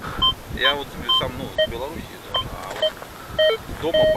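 Fortuna Pro2 metal detector giving short beeps of different pitches as its coil sweeps the ground: high and middle-pitched beeps in the first half, then a run of low beeps near the end. It is running with sensitivity at maximum and no discrimination masks or filters.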